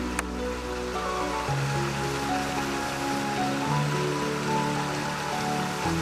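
Small creek cascade pouring over rocks: a steady rushing of water, heard under soft background music with slow sustained notes.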